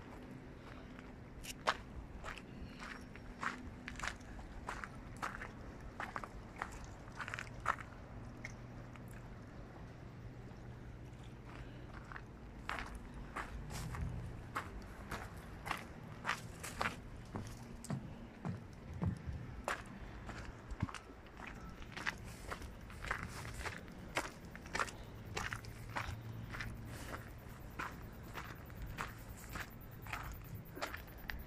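Footsteps of a person walking at a steady pace, a little under two steps a second, pausing for a few seconds about a third of the way in, over a low steady hum.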